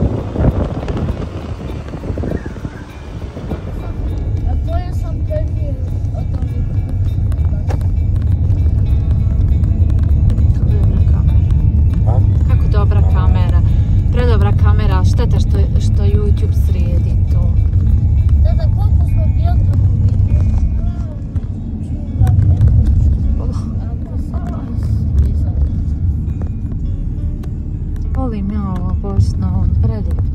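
Wind buffeting the microphone for the first few seconds, then a car's steady low engine and road rumble heard from inside the cabin. Music with singing plays over it at times.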